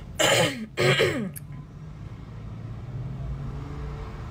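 A person clears their throat twice in the first second and a half. This is followed by a steady low hum of car-cabin noise.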